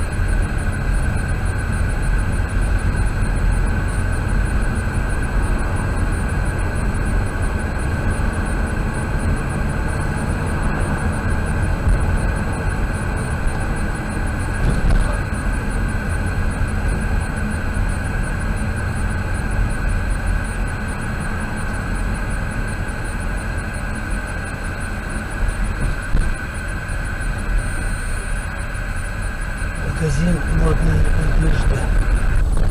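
Steady rumble of a car's engine and tyres heard from inside the cabin while driving slowly along a road.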